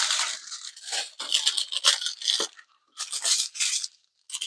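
Small plastic zip bags of resin diamond-painting drills being handled, the plastic crinkling and the beads inside rattling in several rustling bursts.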